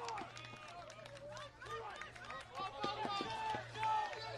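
Several men's voices shouting and cheering at once as runners score on a base hit, over a steady low hum.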